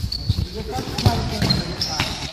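A futsal ball bouncing and being kicked on a hard court, a series of short dull knocks, with players' voices and a laugh.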